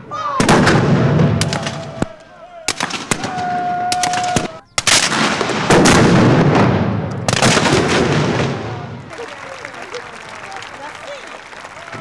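Muzzle-loading field gun firing blank charges: several loud booms with long echoing tails, the loudest about six seconds in.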